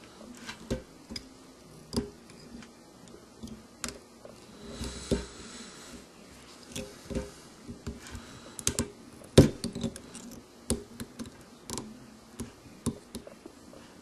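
Scattered small clicks, taps and rustles of hands handling thread at a fly-tying vise while the head of a fly is whip-finished, with the sharpest click about nine seconds in.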